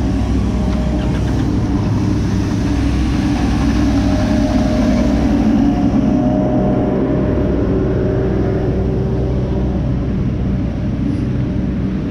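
Small municipal street-sweeper vehicle running close by: a steady engine drone with a held whining tone, loudest as it passes right beside the microphone about midway.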